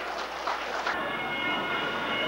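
A Hmong qeej, the bamboo free-reed mouth organ, starts sounding about a second in and holds a steady chord of several reed tones.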